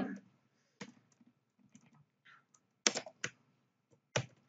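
Computer keyboard being typed on, a few separate keystrokes with a quick run of three near three seconds in.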